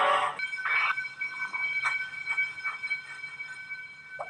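An alarm sounding steadily from about half a second in, two high pitches held together without a break, with a few short knocks and swishes over it.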